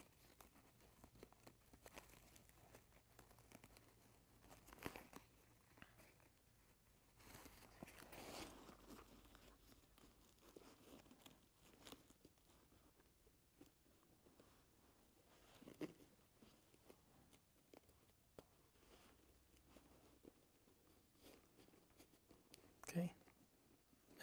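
Near silence with faint, scattered rustling and crinkling of nylon bag fabric and grosgrain ribbon being folded and pressed by hand.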